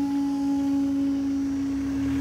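Level crossing's flat-tone road alarm sounding one steady, unwavering tone with no warble.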